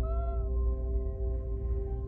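A domestic cat gives one short meow, under half a second long, with background music of steady held notes.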